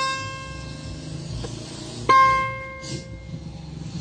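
Acoustic guitar played slowly, one note at a time: a plucked note rings and fades, then a second note is plucked about two seconds in and dies away.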